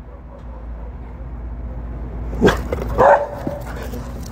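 A dog barks twice in quick succession, about two and a half seconds in, over a steady low rumble.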